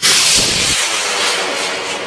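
A small Thai bung fai rocket built from 6-hun (three-quarter-inch) pipe igniting and lifting off: its motor's loud rushing hiss starts suddenly and slowly fades as it climbs away, with a brief low thump about half a second in.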